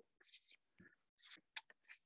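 Near silence broken by a few faint, short whispered sounds.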